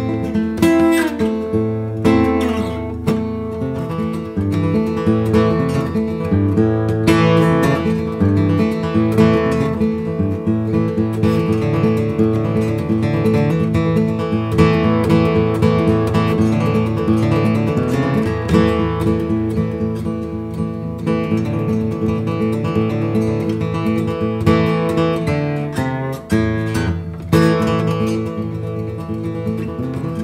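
Baritone five-string "Lojo", a jumbo spruce-top acoustic guitar body set up as a five-string banjo, played unamplified. It is fingerpicked in banjo-style rolls: a continuous run of plucked, ringing notes, with a few sliding notes near the start.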